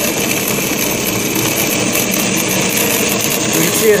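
Acrylic centrifugal pump cavitating with its suction valve throttled: a steady gritty rattle that sounds like rocks going through the pipe. The rattle is vapor bubbles collapsing back into liquid after the water flashes to vapor at the restricted valve.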